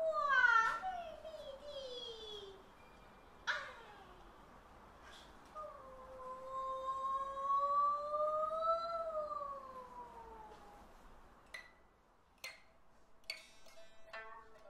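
Kun opera soprano singing a drawn-out melismatic line: sliding downward phrases, then one long high note that rises slowly and falls away. Near the end, a few sharp plucked notes of a pipa enter.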